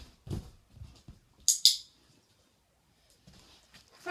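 A dog moving about on carpet around a balance disc: a few soft thumps of its steps, then a sharp double click about a second and a half in.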